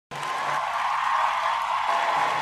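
Podcast intro sound: an even, hiss-like wash with a faint held tone in it, fading in quickly at the start and then holding steady.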